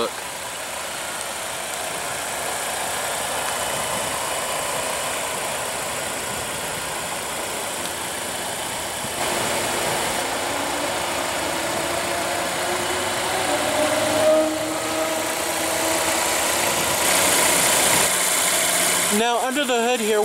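2016 Volvo XC90's 2.0 L supercharged and turbocharged four-cylinder idling, under a steady hiss of outdoor noise. The sound changes in level about halfway through and again near the end.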